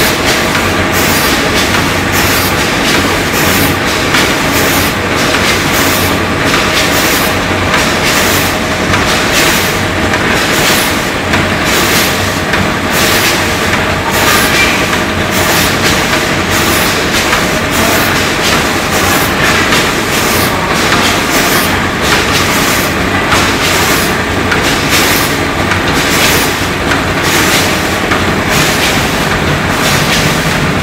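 Pickled Chinese cabbage packing machine running steadily, its mechanism clattering in a rhythm of about two strokes a second over a constant mechanical hum.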